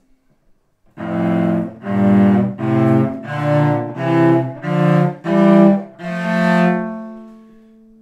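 Cello playing a slow scale in double stops, most likely thirds: eight separate bowed notes, the last one held and left to fade away. It is a left-hand exercise for building a block hand position and playing in tune.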